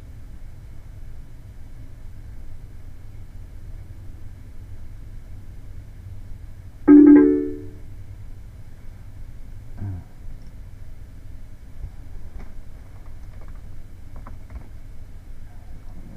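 Computer notification chime sounding once about seven seconds in: a short, loud, pitched tone that fades within a second, as the mesh run finishes. A low steady hum lies underneath.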